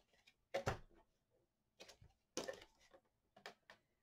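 Faint handling sounds of craft paper and a clear acrylic ruler being laid on a plastic paper scoring board: a few brief taps and rustles, the loudest about half a second in and another just after two seconds.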